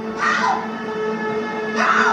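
A TV drama's soundtrack heard through the television's speaker in a room: a steady low music drone, with two brief bursts of sound about a quarter second in and near the end.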